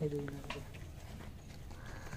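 A person's voice briefly held on one pitch at the start, then faint background noise with a few light clicks.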